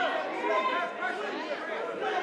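Spectator crowd chattering and calling out around a fight cage: many overlapping voices, none standing out.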